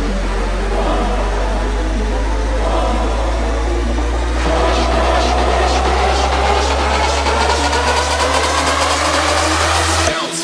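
Big room electro house build-up: a held deep bass drone under a synth sweep that starts rising about halfway through. Drum hits come faster and denser toward the end, and the bass cuts out right at the close.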